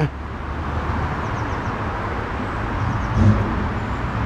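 Road traffic noise: a steady low rumble and hiss that slowly grows louder, peaking about three seconds in, like a vehicle passing.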